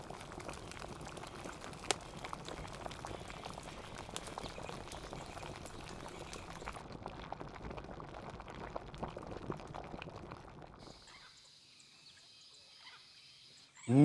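A pot of curry bubbling hard at a rolling boil over a wood fire, with a dense crackle of small bursting bubbles and one sharper click about two seconds in. About eleven seconds in, the bubbling cuts out, leaving only a faint steady background.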